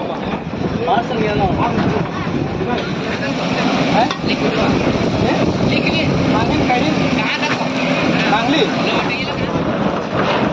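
Indistinct chatter of several voices over a steady, noisy background.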